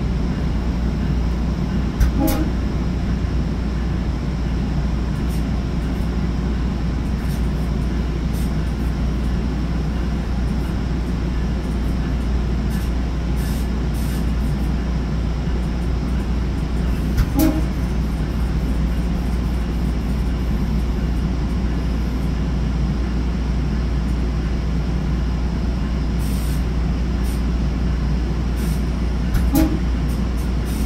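Inside a Sounder commuter rail bilevel coach running at speed: a steady low rumble of wheels on rail and running gear. Three brief sharp clicks with a short pitched ring cut through it, about two seconds in, at about seventeen seconds and near the end.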